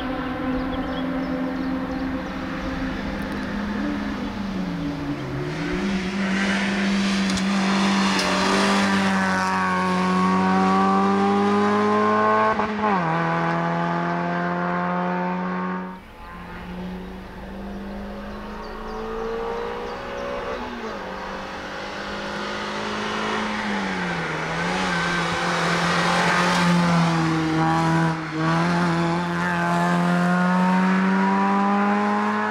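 Suzuki Swift Sport hill-climb car's engine revving hard up through the gears, its pitch climbing, then falling sharply at each gear change or lift and climbing again, and growing louder as the car nears. It breaks off about halfway, and a second pass starts up again, revving the same way.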